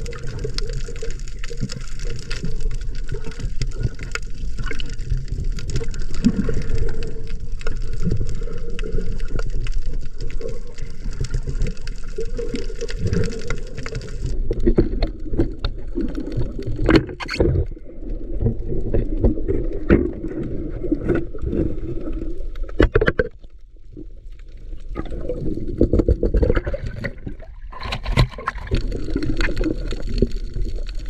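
Water sloshing and bubbling with scattered knocks, a dull steady wash. About halfway through it turns more muffled.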